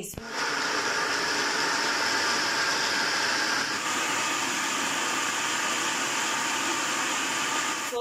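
Electric citrus juicer's motor whirring steadily as an orange half is pressed down onto its spinning reamer cone; the whine shifts slightly in pitch about four seconds in.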